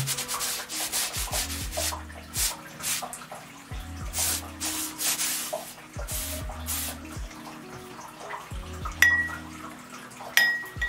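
Bristle brush scrubbing thin oil paint onto a stretched canvas: a run of short, rough strokes that thin out later, with a sharp clink about nine seconds in.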